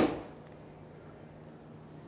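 A golf club striking a ball off the ground in a full swing: one sharp strike right at the start that dies away within half a second, then a faint steady hum.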